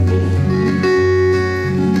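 Acoustic guitar playing chords between sung lines of a country-folk song, the notes ringing on, with the bass note changing about a second in.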